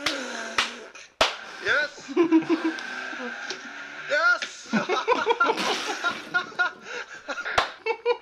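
Soundtrack of a fail-video compilation: excited voices rising and falling, cut by sharp smacks, three in the first second and one near the end.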